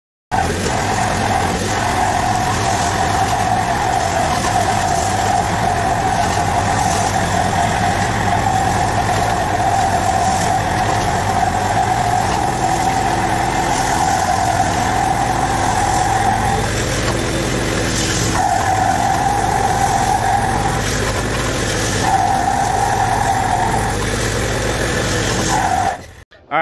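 Walk-behind power trowel's small gasoline engine running steadily under load as it finishes a concrete slab. A steady whining tone over the engine drops out briefly a few times in the second half.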